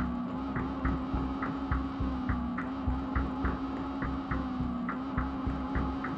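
Tense, dark background music: a steady low drone under a throbbing low pulse, with short light ticks about three times a second.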